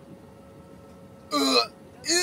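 Faint background hiss, then about 1.3 s in a single short vocal sound from a person, one clipped syllable lasting under half a second.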